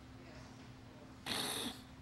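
A short, sharp intake of breath close to the microphone, lasting about half a second and coming a little past the middle, over a faint steady low hum.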